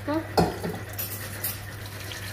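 Kitchen utensils clattering against metal cookware: one sharp knock about half a second in, then a few lighter clinks.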